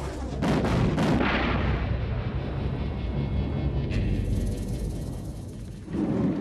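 Dubbed sound effects for a martial-arts energy blast: a few sharp hits about half a second to a second in, then a long, low explosive rumble, with a hiss joining for the last two seconds, over background music.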